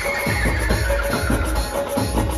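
Live dhumal band music: an electronic keyboard playing a lead melody over a steady, heavy drum beat.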